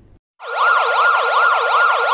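Ambulance siren sound effect: a fast wail sweeping up and down about three times a second. It starts about half a second in and cuts off suddenly.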